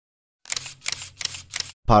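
Camera shutter firing in a quick burst of about five clicks, roughly four a second.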